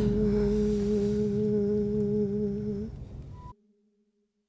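Music fading out on one steady held low note, hum-like, that stops just before three seconds in; the track cuts to silence soon after.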